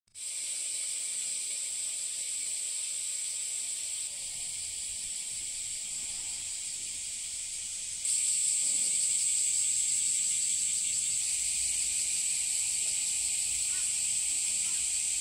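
Cicadas in a steady, high-pitched droning chorus, a little quieter from about four seconds in and louder from about eight seconds in.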